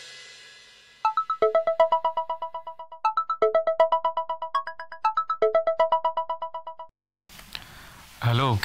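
Mobile phone ringtone: a short electronic melody of rapid pulsing notes, played three times over about six seconds, then cut off when the call is answered.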